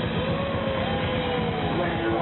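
Live hard-rock band playing loud: distorted electric guitars and drums in a dense wash, with a sliding, bending melodic line riding on top.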